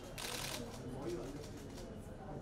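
Camera shutters firing in rapid bursts of clicks, densest about half a second in, over a crowd's low chatter.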